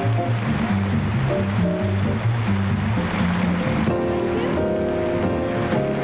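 Live jazz trio of piano, upright bass and drums playing. The bass walks in low stepping notes under ride cymbal and drum strikes, and from about four seconds in the band holds sustained chords.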